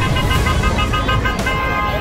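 Busy freeway traffic rumbling past with car horns honking: a run of short toots, then longer held blasts from about halfway through.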